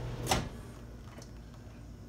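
A single sharp click about a third of a second in, then a faint steady low hum.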